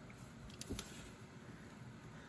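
Quiet background with a few faint clicks a little under a second in.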